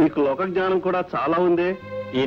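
A man speaking in a film dialogue, with faint background music of held steady notes.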